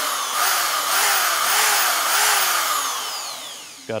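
Corded electric drill spinning free with nothing in the chuck, its motor pitch rising and falling several times as the speed changes, then winding down near the end.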